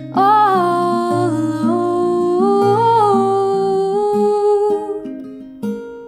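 A woman's voice sings a long wordless melody over an acoustic guitar: held notes slide up and down in pitch while the guitar's lower notes change beneath. The voice stops about five seconds in, leaving the guitar playing on its own.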